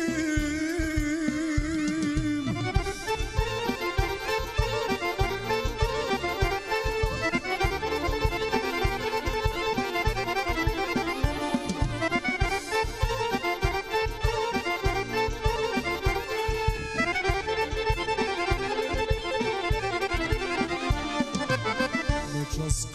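Live folk band playing an instrumental passage led by fast accordion runs over a steady drum beat.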